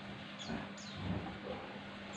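A small bird chirping: two short, high chirps that slide downward, with a faint low knock about half a second in.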